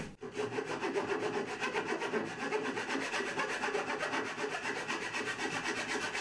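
Manual keyhole saw with a thin Japanese-style blade cutting into a wooden board, rasping in quick, even back-and-forth strokes.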